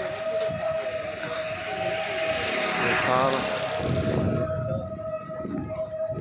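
A long, steady horn blast holding one pitch the whole time. Under it, the noise of a vehicle passing close on the bridge roadway swells, peaks about three seconds in and fades away.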